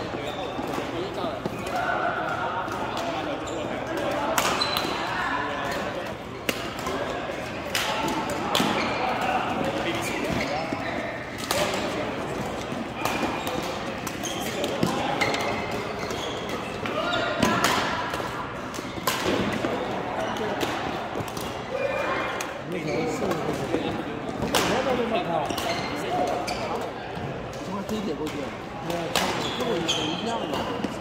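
Badminton rackets striking a shuttlecock during a doubles rally: sharp hits at irregular intervals, from about one to a few seconds apart.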